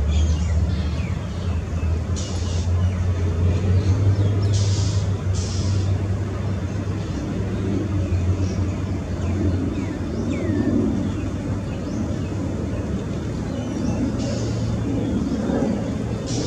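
Steady low rumble of distant road traffic, with a few brief high-pitched chirps about two, five and fifteen seconds in.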